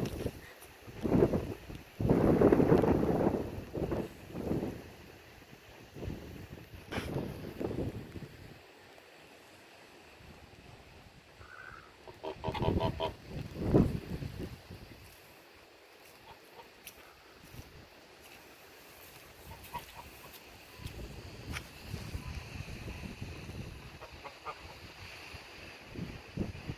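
Ducks calling in loud bursts of quacking, strongest over the first few seconds and again about halfway through, with quieter stretches between.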